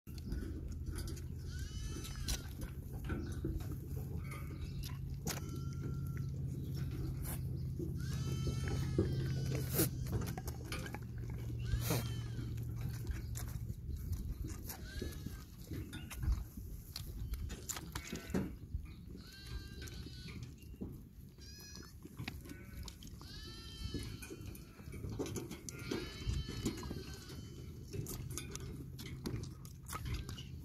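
Young goat kids bleating over and over, many short, high, wavering calls. A low steady hum runs underneath and stops about halfway through.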